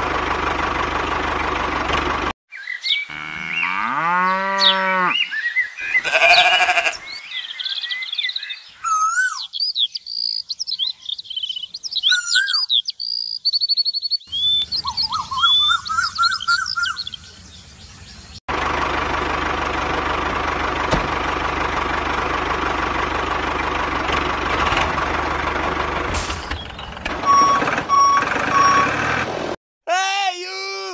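Tractor engine sound effect running steadily, cut off abruptly about two seconds in. Then comes a string of short sound effects with sliding pitch and high chirps. From about eighteen seconds the engine sound returns, with four short reversing beeps near the end.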